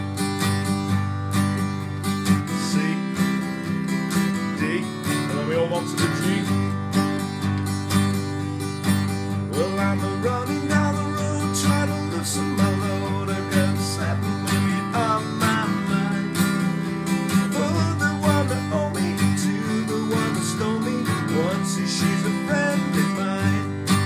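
Steel-string acoustic guitar strumming open chords in a steady, brisk rhythm, cycling through G, C and D.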